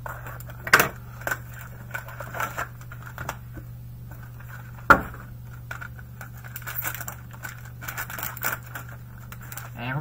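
Hands handling trading-card packaging: a plastic bag crinkling and rustling, with small clicks and taps and two sharper knocks, about one second in and about five seconds in.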